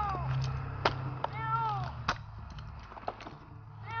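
A domestic cat meowing twice from up the tree: one call at the very start and another about a second and a half in, each falling in pitch. A few sharp clicks and knocks from the climber's gear against the trunk come in between.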